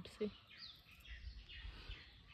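Faint bird chirps, a few short high calls including a quick downward glide, over a low background rumble.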